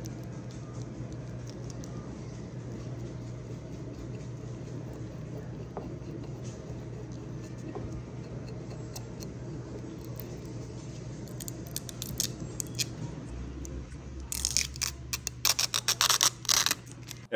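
Steady low hum with faint rubbing, then, about two-thirds of the way through, a run of clicks building into loud crackling and crinkling as the clear plastic carrier film of a UV DTF transfer is peeled off a glass jar.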